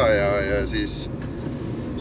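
Steady low drone of a K-swapped Honda Civic's engine and road noise inside the cabin while driving, under a man's drawn-out voiced sound at the start.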